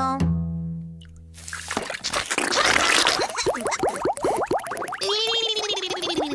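Cartoon soundtrack music with comic sound effects: low held bass notes at first, then a rapid flurry of short rising sliding tones over a hiss, and near the end one long gliding tone that rises and falls.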